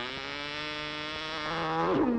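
Cartoon soundtrack score: a held chord of brass-like tones that swells louder and then slides down in pitch near the end.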